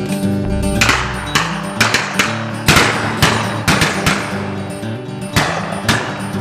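Acoustic guitar music with a volley of about ten sharp shotgun shots over it, coming in quick, uneven succession; the loudest is a little before the middle.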